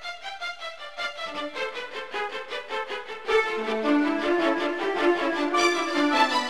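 Background music: a quick, even pulse of repeated pitched notes that turns fuller and louder, with lower held notes, about three seconds in.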